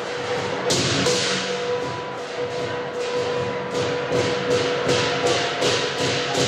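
Lion dance percussion: drum, clashing cymbals and a ringing gong. A couple of clashes come about a second in, then steady strikes at about three a second from around four seconds in.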